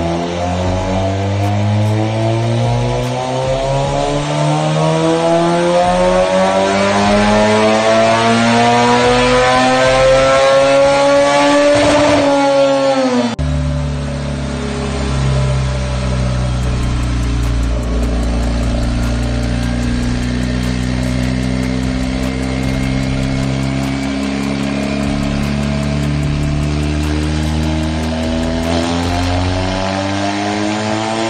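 Turbocharged Honda Civic four-cylinder engine making a long full-throttle pull on a chassis dyno: the revs climb steadily for about twelve seconds, then drop suddenly at about thirteen seconds. It then holds a steady lower speed and starts climbing again near the end.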